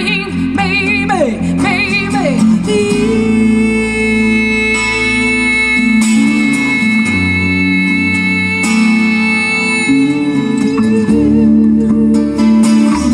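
Live band music from a small acoustic group: a woman's voice sings a wordless, wavering phrase with falling glides over acoustic guitar and bass guitar, then from about three seconds in the guitar and bass play on alone.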